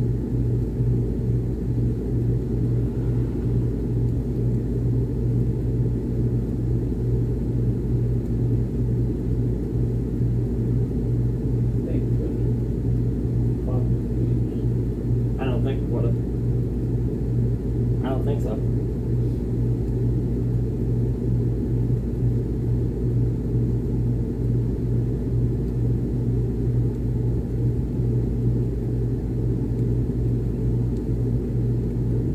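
A Miller packaged air-conditioning unit running, heard through a house register: a steady low hum with a rumbling rush of air, unchanging throughout, with a few faint short sounds midway.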